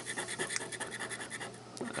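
The scratch-off coating being scraped off a paper lottery ticket in rapid, short strokes.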